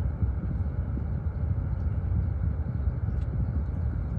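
Steady low rumble of a car heard inside its cabin, with a faint even hum underneath, as from the engine idling.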